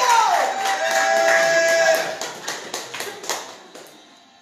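Audience clapping with held whoops and cheers over the first two seconds; the claps then thin out and die away.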